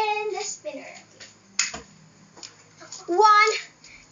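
A child's voice in two short drawn-out calls, one at the start and a louder one about three seconds in, with a single sharp click in between.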